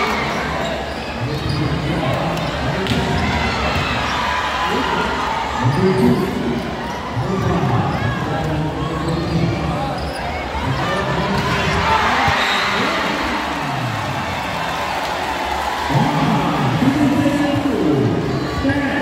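Volleyball rally in a large gymnasium: the ball being struck now and then, with many voices from players and spectators shouting and talking throughout, echoing in the hall.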